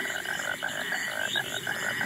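A frog croaking in a rapid run of short, evenly repeated calls that fades out shortly before the end.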